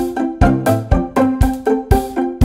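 Background music with a steady beat of about two low thumps a second under short, repeated pitched notes.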